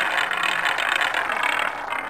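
Spinning prize wheel sound effect: a fast, steady ratchet clicking as the wheel turns past its pointer.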